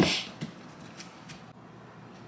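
A short knock at the start, then a few faint light clicks over low room hiss: small objects being handled on a kitchen counter.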